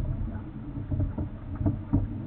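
Scuba regulator bubbles heard underwater: a low rumble with short crackles scattered through it.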